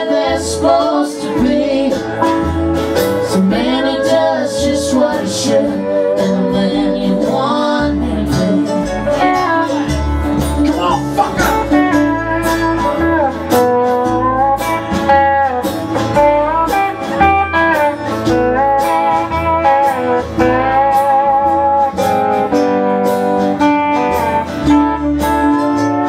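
Live country band playing: acoustic guitars and an upright double bass keeping a steady bass line under a melody line that bends in pitch.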